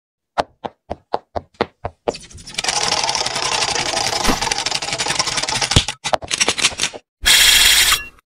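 Sound effects of an animated logo intro. It opens with six quick clicks in about a second and a half, then a few seconds of dense scratchy noise with a sharp knock. A short, loud hiss comes near the end.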